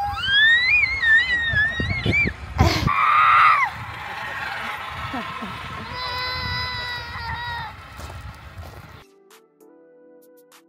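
A young child squealing in high, gliding cries while riding a playground zip line, with a short loud rush of noise about three seconds in and a held cry a few seconds later. Near the end the sound cuts to soft background music.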